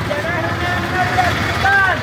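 A group of voices chanting together in long, drawn-out phrases, over the low running of street traffic.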